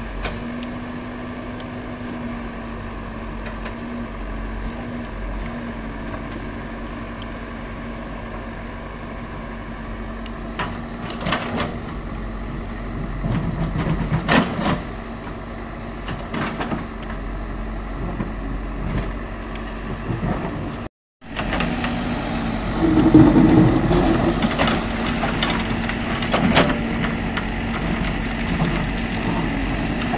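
JCB 3DX backhoe loader's diesel engine running steadily while the backhoe digs into loose rock, with scattered knocks and scrapes of the bucket on stone. The knocks come more often and louder in the second half, and the sound cuts out for an instant partway through.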